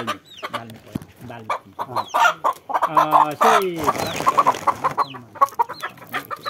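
A chicken held in a man's hands, clucking and squawking in a run of short calls, with one longer call that falls in pitch about halfway through.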